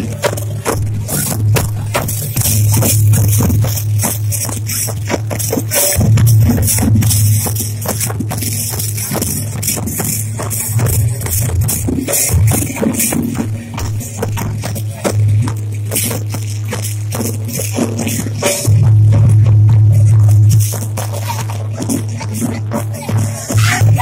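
Loud dance music with dense, rapid rattling percussion over a heavy low drone, sounding overloaded and getting louder for about two seconds near the end.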